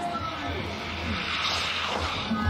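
A ski jumper's skis rushing down the in-run tracks of a ski-jumping hill, building to a peak near the end as the jumper reaches the take-off.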